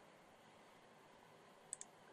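Near silence with faint room tone, broken near the end by a quick double-click of a computer mouse button.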